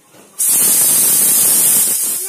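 Pressure cooker's weighted valve venting steam in a loud, steady hiss that starts suddenly about half a second in: the cooker has come up to pressure.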